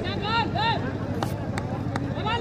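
Steady murmur of a large outdoor crowd, with two short high-pitched calls that rise and fall in pitch within the first second and a few sharp clicks in the second half.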